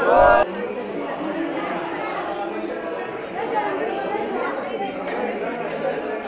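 Crowd of many people talking over one another, with the echo of a large stone hall. It opens with a brief loud burst of voices that cuts off about half a second in.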